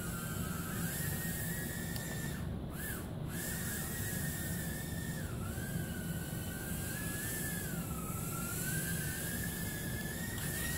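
JJRC H36 micro quadcopter's four tiny coreless motors and propellers whining in flight. The pitch wavers with throttle and dips briefly as power is eased, twice in quick succession about two and a half to three seconds in, then again near the middle and later on.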